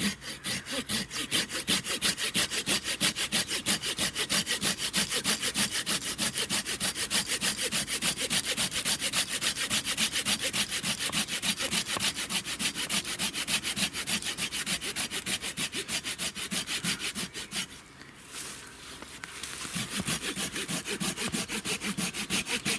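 Silky Gomboy folding pruning saw cutting through a hard, dense hornbeam log in rapid, even strokes, with a brief pause near the end before the strokes pick up again.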